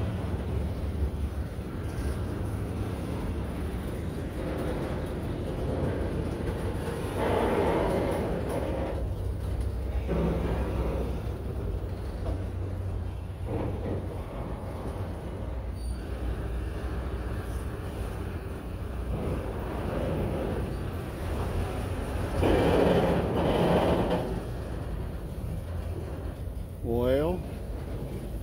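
Autorack freight cars rolling slowly past, a steady rumble of steel wheels on rail, with louder squealing stretches about seven seconds in and again around 23 seconds, and a rising squeal near the end as the train brakes toward a stop.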